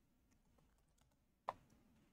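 Faint computer keyboard typing: a few soft keystrokes and one sharper key click about one and a half seconds in.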